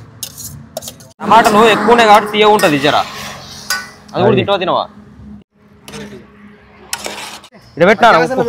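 A steel ladle scraping and clinking against a steel bowl and an aluminium cooking pot as chopped tomatoes are tipped in. There are a few sharp clinks, and a man's voice is loud for a couple of seconds in the middle.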